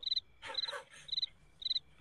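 Repeated short, high-pitched animal chirps in the background, about two a second.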